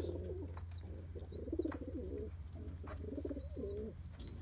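Pigeons in a loft cooing over and over, low warbling calls that overlap one another, with a few short, high chirps above them.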